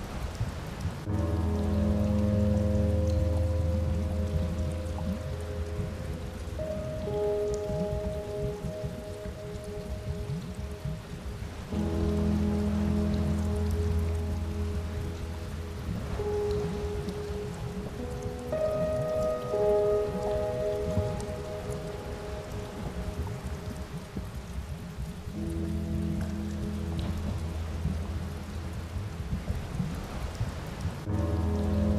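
Slow ambient music bed: long held chords with a deep bass, changing every several seconds, over a steady rain-like crackling hiss.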